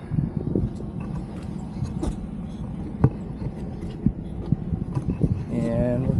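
A vehicle engine runs steadily under scattered sharp clicks and knocks as the roof-mounted action camera is handled and moved.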